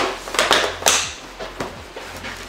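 Inflated latex balloons being handled and pressed together, giving a few short rubbing, crinkling noises about half a second apart.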